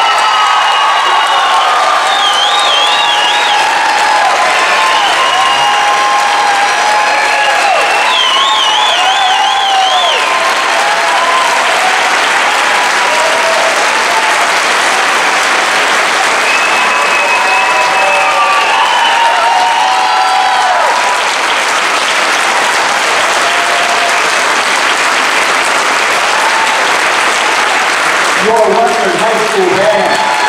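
Audience applauding and cheering for a concert band, with shouting voices scattered through the steady clapping.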